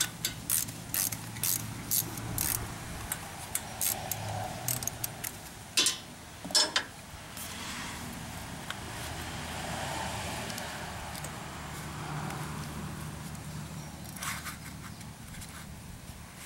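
Irregular light metallic clicks and taps as hands work a loosely mounted Briggs & Stratton ignition coil (magneto) and a business-card air-gap shim against the flywheel. The clicks come thick and fast over the first several seconds, then give way to softer rustling with a few more taps near the end.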